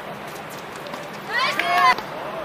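A voice calls out once, high-pitched and about half a second long, near the end, as the point finishes. Before it there is an outdoor court hush with a few faint knocks.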